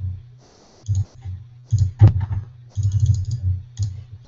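Computer keyboard typing and mouse clicks in short bursts, with one sharp click about two seconds in.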